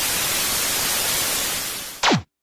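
TV static sound effect: a steady, loud hiss of white noise like an untuned television. At the very end it gives way to a quick falling zip, the sound of an old CRT set switching off.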